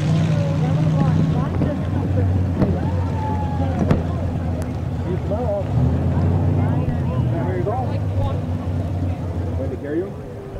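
Stock car engine idling with a steady low rumble, with faint voices in the background.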